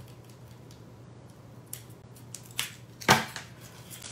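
Scissors and a plastic ribbon spool being handled on a craft mat: a few faint clicks and ticks, then a sharper click about three seconds in, over a steady low hum.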